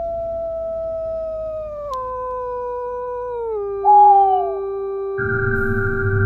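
Eerie horror sound effect: long, clean howling tones that slide down in pitch in steps, with a short, louder falling wail at about four seconds. About a second before the end, a low drone and a higher steady tone set in.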